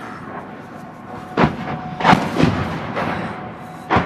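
Mortar rounds exploding one after another in an attack: four sharp blasts, the middle two close together, each rolling on in a rumble.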